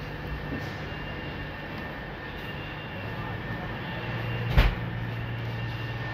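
Interior of a Class 319 electric multiple unit carriage: a steady low hum from the train's equipment, with a deeper hum joining about halfway through. A single sharp knock comes a little after that.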